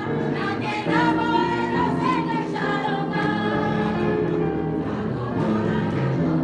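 A congregation of women singing a hymn together, the voices holding each note and moving to the next every second or so without a break.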